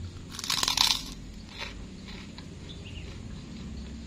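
A bite into a fried kerupuk (Indonesian cracker): one loud, crackling crunch about half a second in that lasts under a second, followed by a few quieter crunches as it is chewed.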